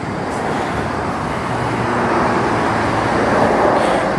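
Road traffic noise from a passing vehicle: an even rushing sound that slowly grows louder.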